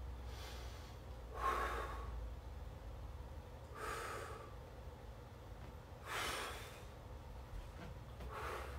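A man breathing hard, with three heavy breaths about two seconds apart, from the strain of holding a bridge position.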